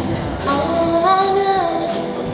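A woman singing live, holding a note that steps up in pitch about a second in, over strummed acoustic guitar and snare drum played with sticks.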